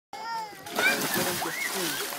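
Water splashing in a shallow spring pool as a person plunges in, starting under a second in, among children's voices.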